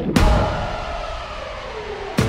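A break in the background music: a sudden hit followed by one slowly falling, fading tone, like a downward-sweeping transition effect, before the music resumes.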